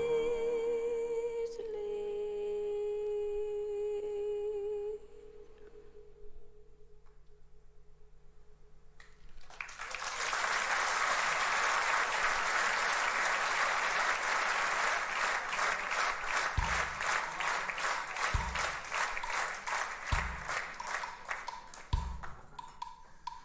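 A woman's singing voice holds a long final note with vibrato, ending about five seconds in. After a short hush, a theatre audience applauds. Their clapping falls into a rhythmic beat of about three claps a second, with a few low thuds near the end.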